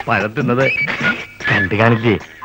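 A man's voice in animated, expressive speech.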